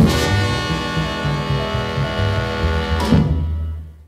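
Rhythm-and-blues band with horns and drums playing the closing chord of a song: struck at once, held, and hit again about three seconds in. It dies away just before the end.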